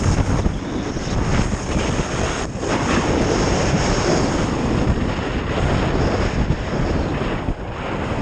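Wind rushing over the camera's microphone as a skier descends at speed, mixed with the skis' edges scraping over hard-packed groomed snow. The noise is loud and steady, dipping briefly twice.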